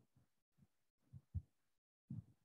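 Chalk tapping against a blackboard during writing: faint, short, low knocks, with two louder ones in quick succession a little after a second in.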